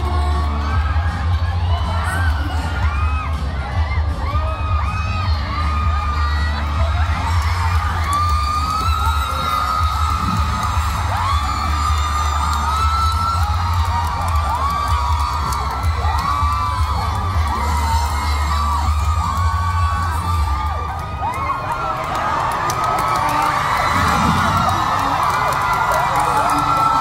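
A large audience of fans screaming and cheering throughout, many high shrieking voices overlapping, as contestants race against the clock. Underneath runs a steady deep bass that stops about twenty seconds in.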